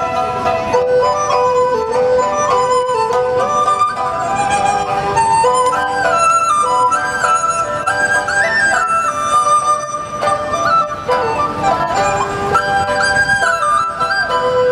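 Chinese sizhu ensemble playing live: a dizi bamboo flute carries the melody over erhu, pipa, yangqin and guzheng.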